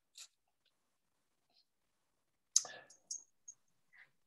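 Near-silent video-call audio, broken by a few faint short clicks and one brief noisy sound about two and a half seconds in.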